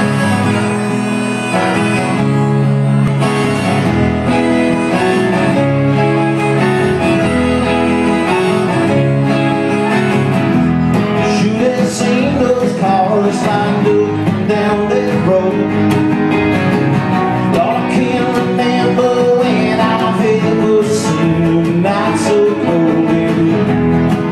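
Live Americana band playing: acoustic guitar, electric guitar, mandolin and upright bass together in a steady country-bluegrass groove.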